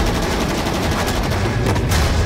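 Rapid automatic rifle fire, a dense run of shots.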